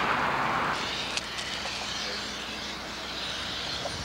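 Steady rush of outdoor noise from passing highway traffic, a little louder for the first moment, with a couple of faint clicks about a second in.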